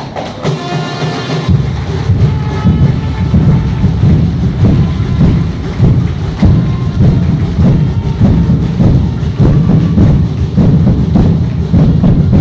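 Audience applauding loudly: a dense patter of many hands clapping that swells about a second and a half in and keeps going.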